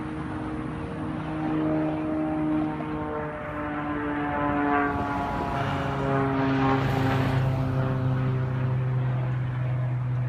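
Aerobatic airplane's engine droning in the distance, its pitch sliding up and then down as the plane manoeuvres. A stronger, steady low hum takes over about halfway through.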